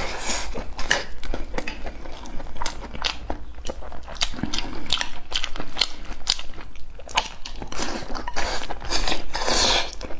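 Close-miked chewing and mouth sounds of someone eating rice, mixed with quick irregular clicks of wooden chopsticks against a ceramic bowl. A longer, louder burst of eating noise comes near the end.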